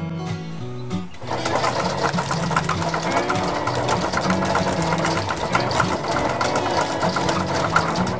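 Driving-range golf ball dispenser running, with a rapid clatter of balls dropping into a plastic basket. It starts about a second in and plays over guitar music.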